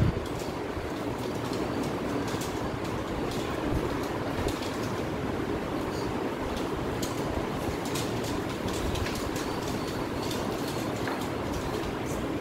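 Several plastic Rubik's-type twisty puzzles being turned quickly at once: a continuous irregular clicking and rattling of the layers, over a steady room hum.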